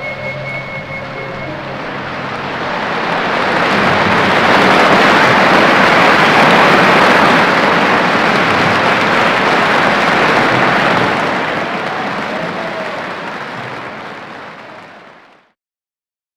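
Concert audience applauding. The applause swells after the orchestra's last held note dies away a second or so in, then fades and cuts off suddenly near the end.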